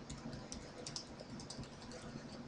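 Faint typing on a computer keyboard: a quick, uneven run of keystrokes as a short phrase is typed.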